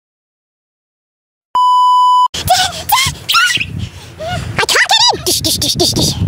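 Dead silence for about a second and a half, then a single steady high electronic beep lasting under a second that cuts off abruptly, as in an edited-in bleep. Then young girls' high-pitched voices squealing and laughing.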